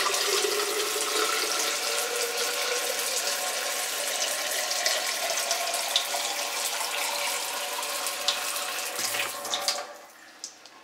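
Tap water pouring steadily from a faucet into a glass vase, filling it; the stream cuts off near the end.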